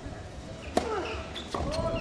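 Tennis racket striking the ball on a serve, a sharp crack about a second in, followed by a second hit about half a second later as the ball is returned. Faint voices murmur underneath.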